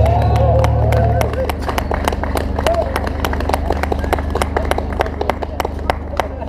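A live blues song ends on a held sung note and a final keyboard chord that stop about a second in, followed by scattered clapping from a small crowd with voices under it.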